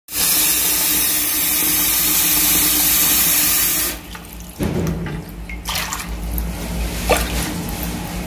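Bathroom washbasin tap running strongly for about four seconds, then shut off suddenly, into a sink that is clogged with hair and draining slowly. A few faint clicks follow in the quieter stretch.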